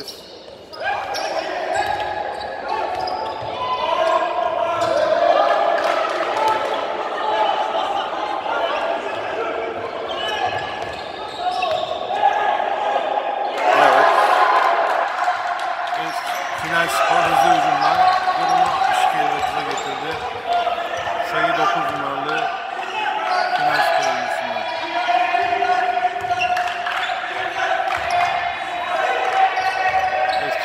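Live basketball play on a hardwood court in a large sports hall: the ball dribbled and bouncing on the floor, with players' and coaches' voices calling out on court.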